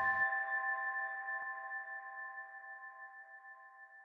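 The last chord of an intro jingle: a bell-like chime of several steady tones ringing out and slowly fading away. The low end drops out just after the start.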